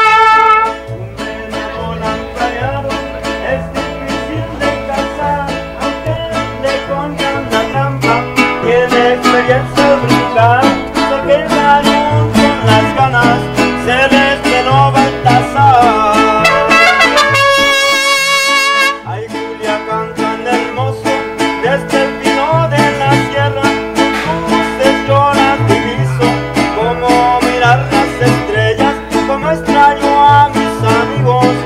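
Mariachi band playing: trumpets finish a phrase at the very start, then violins and strummed guitars carry on over a steady plucked bass rhythm. A held, wavering high note rings out a little past the middle, followed by a brief dip in loudness before the playing picks up again.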